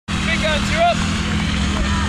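Distant raised voices of people calling out across an open playing field, a few short shouts in the first second, over a steady low rumble.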